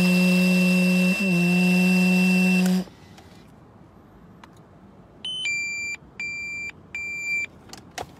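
Car breathalyzer ignition interlock taking a breath sample: a steady hum with a high tone over it while the sample is blown, which stops about three seconds in. A few seconds later the device gives a short chirp and then three evenly spaced beeps.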